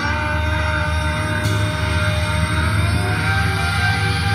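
Live prog-rock band holding a sustained chord over a steady low bass drone. A single held high note slides slowly upward in pitch over the second half.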